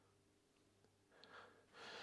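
Near silence: quiet room tone, with a faint breath near the end.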